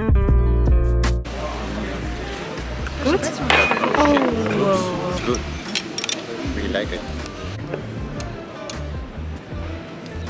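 Background guitar music stops suddenly about a second in, giving way to outdoor street and café ambience with voices. Scattered light clinks of metal chopsticks and crockery on the table run through it.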